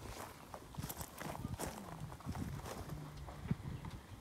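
Footsteps crunching on gravel as short, irregular clicks, with chickens clucking faintly.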